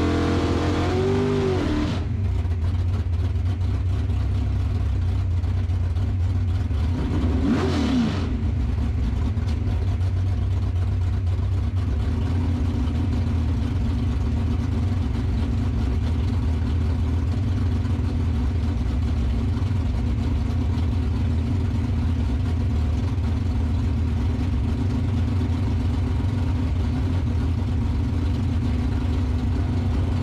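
Drag-racing Camaro's engine idling steadily, heard from inside the cockpit. A rev dies away at the start, and the throttle is blipped once, rising and falling quickly, about eight seconds in.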